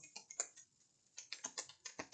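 Faint, irregular light clicks and taps of hands handling cards on a tabletop. A quick run of clicks is followed by a short pause, then more clicks.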